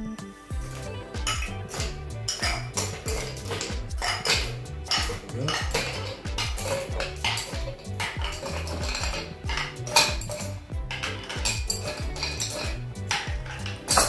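Ice cubes dropped one after another from metal tongs into a glass mixing glass, with repeated sharp clinks at irregular intervals.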